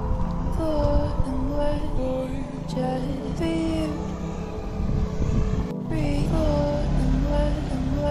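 Background music: a melodic line of gliding notes repeating phrase after phrase, over a low steady rumble. The sound briefly drops out just before six seconds in.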